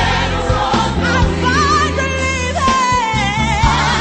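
Gospel song: a lead voice sings a melody with vibrato over choir voices and a band, with a steady bass line underneath.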